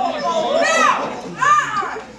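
Two high-pitched cries from a person, each rising and then falling in pitch, about a second apart, over background audience chatter: wordless exclamations of surprise.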